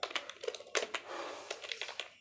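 Computer keyboard being typed on: an irregular run of key clicks as Hindi text is entered.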